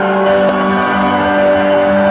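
Organ holding a sustained chord through a live band's PA, the notes steady without change; a brief click sounds about half a second in.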